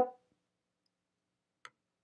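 Near silence with one faint, short click about one and a half seconds in: an acrylic Omnigrid square quilting ruler being set down on the cutting mat over the fabric.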